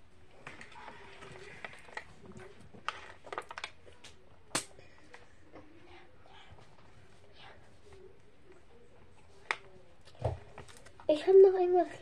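Quiet room with a few faint clicks and rustles. A girl starts talking loudly about a second before the end.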